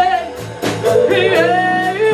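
Live blues band playing, with a woman singing over electric guitars, bass, drums and keyboard.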